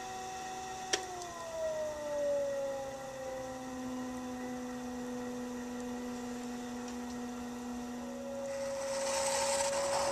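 Electric pottery wheel motor whining steadily. After a sharp click about a second in, its pitch slides down over a few seconds as the wheel slows, then holds. Near the end a hissing scrape comes in as a metal tool cuts clay at the base of the spinning cup.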